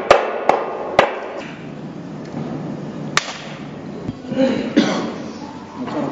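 Sharp smacks of a bare hand driving nails into a thick wooden board: three in quick succession in the first second, and one more about three seconds in.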